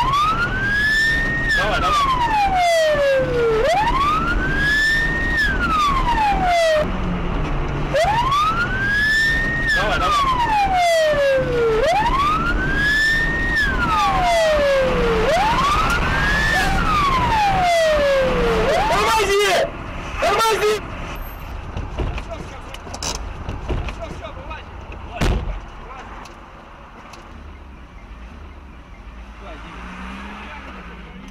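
Police car siren wailing over engine and road noise, each cycle a quick rise and a slower fall, about one every four seconds. The siren cuts off about twenty seconds in, leaving quieter driving noise and a single knock a few seconds later.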